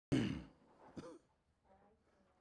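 A man's short breathy vocal sounds: a sudden loud breath with some voice in it at the very start that fades away, then a second shorter one about a second in.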